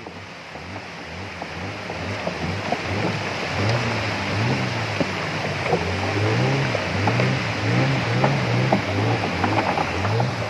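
River rapids rushing around a wooden longboat as it is poled through shallow fast water, growing louder after the first second. A low hum wavers up and down underneath from about four seconds in, with a few light knocks.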